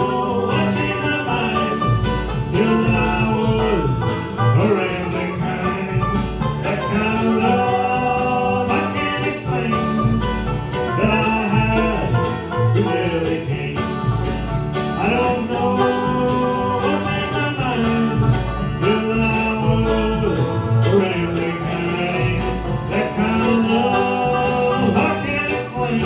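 Bluegrass band playing live: mandolin, acoustic guitar, upright bass and banjo together, with a steady bass pulse underneath.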